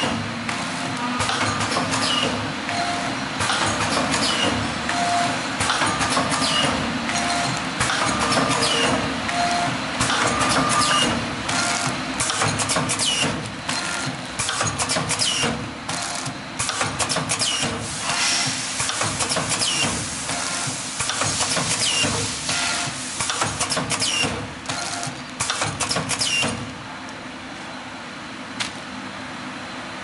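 DXD-50FB pneumatic powder sachet packing machine running, repeating its cycle about every two seconds with sharp clicks as it forms, fills and seals each bag. The cycling stops about 26 seconds in, leaving a quieter steady noise.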